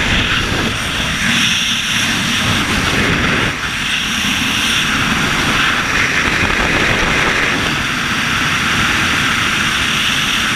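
Loud, steady rush of freefall wind buffeting the skydiver's camera microphone, swelling and easing slightly every few seconds.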